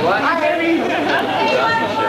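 Several people talking at once in a crowded room between songs, a steady chatter of overlapping voices with no music.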